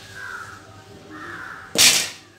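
Crows cawing twice, harsh falling calls. Near the end, a short, loud burst of rushing noise.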